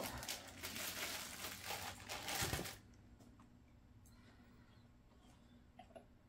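Plastic bag crinkling as a model passenger car is pulled out of it, stopping about three seconds in and leaving only a few faint clicks.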